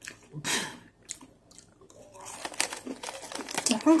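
Crunchy chewing of a strawberry-cream Oreo cookie, then the foil-lined snack wrapper crinkling with many small crackles through the second half.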